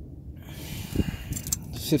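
A man's breath drawn in over the rustle of a phone being moved by hand, with a soft thud about a second in; speech begins right at the end.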